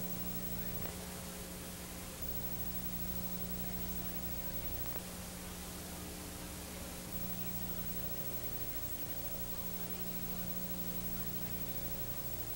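Steady hiss with a low electrical mains hum: the background noise of an old videotape recording, with no distinct sound event.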